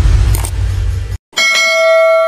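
Outro sound effects: a loud noisy whoosh with a deep rumble cuts off suddenly about a second in. After a short gap, a bright notification-bell ding rings out as the animated bell icon is clicked, and its several clear tones ring on.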